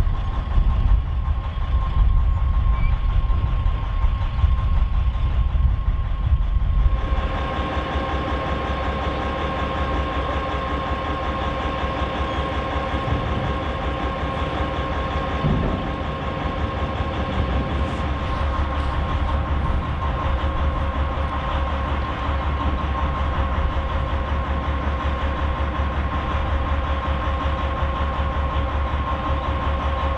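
MÁV M47-class (478 227) diesel locomotive engine. For the first seven seconds it gives a loud, heavy low rumble as it hauls the train. After a cut it settles into a steadier running note with a held whine, and this runs on to the end.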